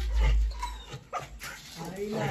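A dog making short vocal sounds, with voices in the background. A low rumble comes in the first half-second.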